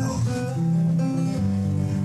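1960 Gibson LG-0 flat-top acoustic guitar strummed steadily between sung lines, the last sung word fading just as it begins.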